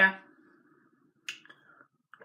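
A single short, sharp click about halfway through, followed by a fainter tick, in an otherwise near-quiet room.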